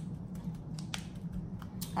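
Light, scattered clicks and crinkles of aluminium foil tins as shredded cheese is pressed down into them by hand, over a steady low hum.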